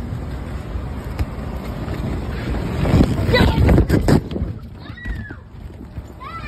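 Steady low rumble of an inflatable's air blower, mixed with wind on the phone's microphone. Scrambling on the vinyl swells louder about three seconds in as the inflatable is climbed, and a brief high, sliding squeal comes near the end.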